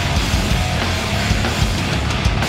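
Heavy hardcore band playing live at full volume: distorted electric guitars and bass over dense, driving drums, with no vocals in this stretch.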